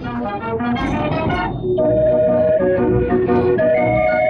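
Dutch street organ playing a tune: quick short notes at first, then, after a brief break about one and a half seconds in, louder held notes.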